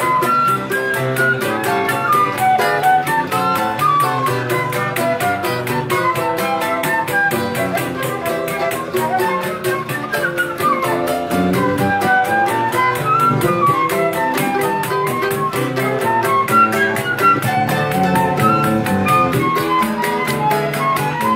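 Live choro ensemble: a flute plays a quick, ornamented melody over strummed and plucked acoustic guitars and cavaquinho, with a pandeiro keeping a fast, steady beat.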